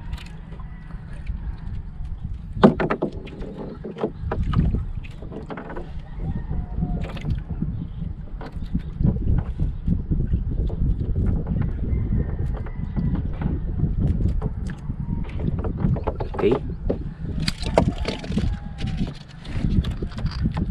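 Water lapping against the hull of a small wooden outrigger boat, over a steady low rumble, with scattered small knocks and one sharp knock about three seconds in.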